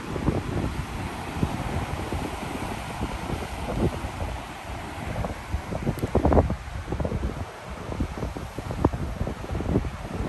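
Wind gusting over a phone microphone in irregular, rumbling buffets, with the rush of the sea along a cruise ship's hull underneath.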